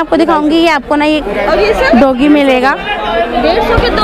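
People talking close by, with voices through most of the stretch and chatter behind them.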